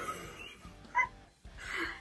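A woman's stifled laughter behind her hand: a short, high squeak about halfway through, then a breathy laugh near the end.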